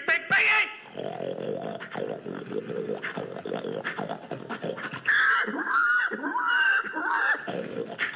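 A man making pig noises with his mouth into a cupped handheld microphone: a run of low, rough grunting, then high squeals that slide up and down from about five seconds in.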